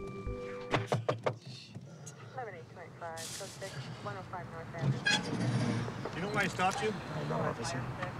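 Hushed, indistinct voices inside a car, after a few sharp clicks about a second in.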